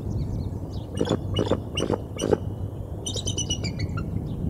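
Geese honking four times about half a second apart, then a bald eagle's quick, high chittering call near the end. Faint songbirds chirp in the background.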